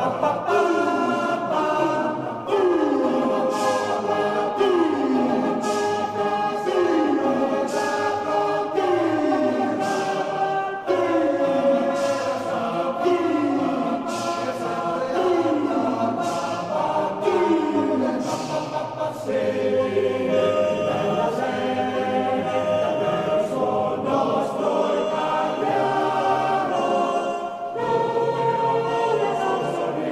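A choir singing, a repeated falling phrase about every two seconds before the song moves on to a different passage near the end.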